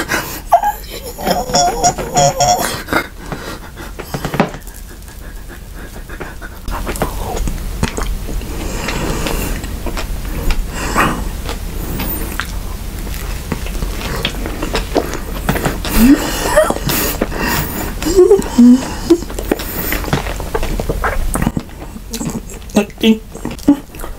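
Close-miked eating sounds: chewing and mouth clicks from a soft white-bread sandwich filled with whipped cream and fruit. Wordless vocal sounds come near the start and again about three-quarters of the way through.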